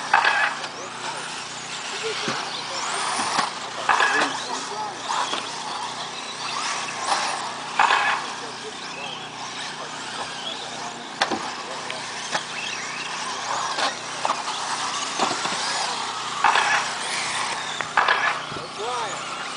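1/10-scale four-wheel-drive electric RC cars racing, their motors whining and repeatedly rising and falling in pitch as they speed up and slow down through the corners.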